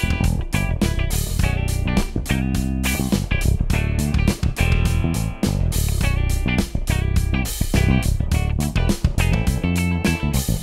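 Sire V7 Vintage five-string electric bass played fingerstyle in a steady run of notes, together with an electric guitar played with a pick.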